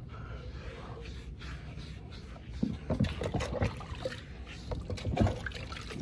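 Water sloshing and rubbing as a wet, soaped dog is scrubbed with a rubber brush in a plastic tub. It is fairly even at first, then turns to irregular splashes and knocks from about two and a half seconds in.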